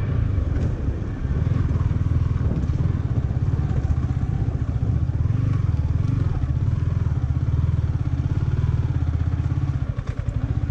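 Yamaha motorcycle engine running steadily at low revs while being ridden slowly, with a brief dip about a second in.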